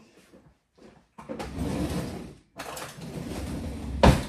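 A kitchen drawer being slid open and rummaged through, two stretches of sliding and rattling noise, with a louder knock right at the end.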